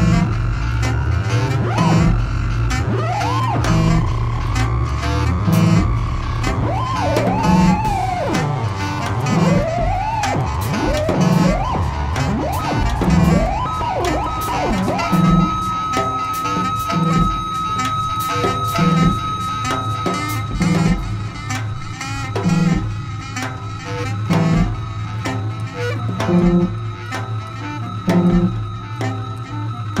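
Live improvised band music: an electric bass holds a low drone under a regular low drum hit about once a second, with cymbal ticks. Over it, high sliding, swooping tones waver through the first half. From about halfway they give way to one steady held high note.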